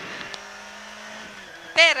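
Peugeot 106 N1 rally car's inline four-cylinder engine, heard from inside the cabin, running at steady revs on a stage, with road and tyre noise underneath. A co-driver's voice cuts in near the end.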